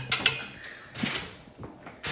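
Clothes hangers clicking against a closet rod as garments are hung, with a couple of sharp clicks just after the start, then fainter clicks and fabric rustle and a small knock about a second in.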